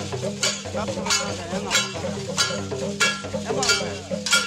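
Dancers' worn rattles shaking in a steady beat, a sharp rattling stroke about every two-thirds of a second, over lower pitched sounds.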